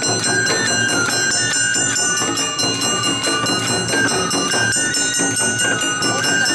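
Live Awa Odori festival music: a bamboo flute melody stepping up and down over rapid drum strikes and the steady metallic ringing of the kane hand gong.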